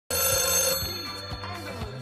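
House landline telephone bell ringing: one ring that starts right at the beginning, is strong for under a second, and then dies away.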